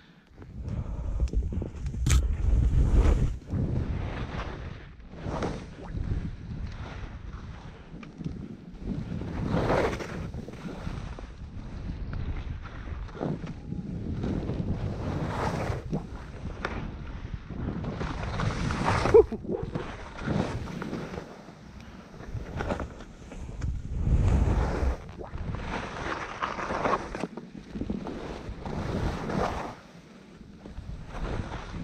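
Skis swishing and scraping through snow in irregular surges from turn to turn, with wind buffeting the microphone in low rumbling gusts. One sharp click stands out about two-thirds of the way through.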